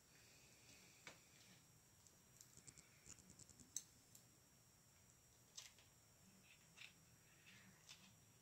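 Faint small plastic clicks and taps from a toy proton pack being handled and fitted, with a quick run of clicks near the middle, against near silence.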